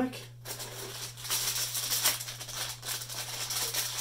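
Crinkling and rustling of foil blind-bag packets being handled, a dense crackle of many small ticks, over a steady low electrical hum.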